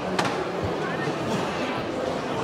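Indistinct voices over a steady open-air background, with one sharp click shortly after the start.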